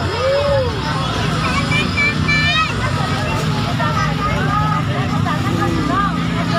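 Crowd of onlookers chattering and calling out, with motorbike engines running among them. A brief high call cuts through about two seconds in.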